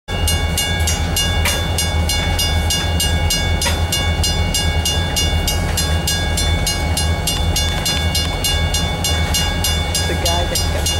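Loaded freight tank cars rolling past with a low rumble, while a railroad crossing bell rings steadily at about three strokes a second.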